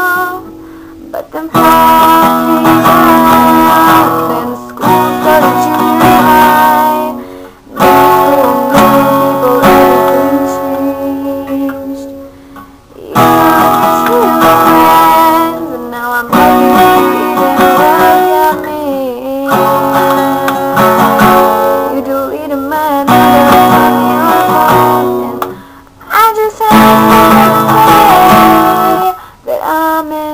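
A girl singing while strumming an acoustic guitar, the music dropping away briefly between phrases a few times.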